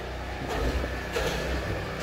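A steady low mechanical hum with a faint rumble underneath.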